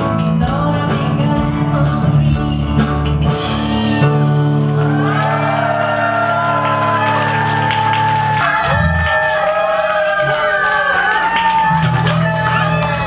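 Live band music with a woman singing into a microphone, over a steady beat that thins out after about three seconds; from about four seconds in the audience claps along and calls out.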